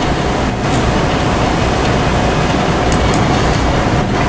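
Steady meeting-room background noise: a low rumble and hiss with a faint steady hum. There are a couple of light clicks about three seconds in.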